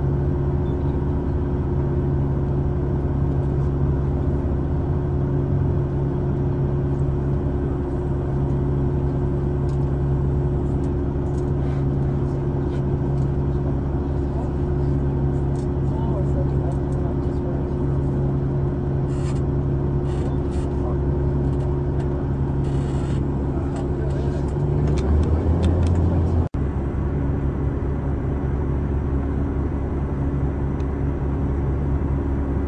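Caterpillar haul truck's diesel engine running at a steady speed while its tray is raised to dump ore, with scattered light ticks and rattles. About 25 seconds in the engine note grows louder and drops lower, then breaks off suddenly, and a similar steady hum follows.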